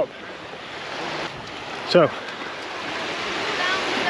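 Small waves washing up on a sandy beach: a steady hiss of surf that slowly swells over the few seconds.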